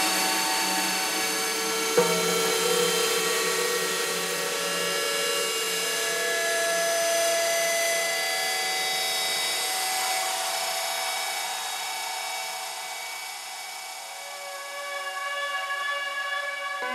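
Beatless breakdown in a tech house / deep house DJ mix: held synth tones and pads drone on with no kick drum, with one click about two seconds in. The level dips late on, then swells back up toward the end.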